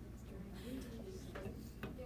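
Two short, sharp clicks about half a second apart, over faint background chatter of voices and a low hum.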